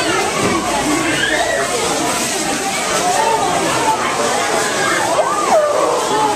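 Many young children's voices chattering and calling out over one another, with one high voice swooping up and then down about five seconds in.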